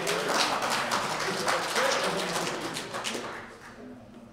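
Audience clapping with a few voices mixed in, fading away near the end.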